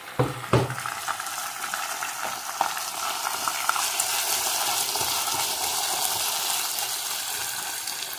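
Raw shrimp sizzling in a small saucepan while being stirred with chopsticks: a steady frying hiss that grows a little louder about halfway through. A couple of knocks come near the start.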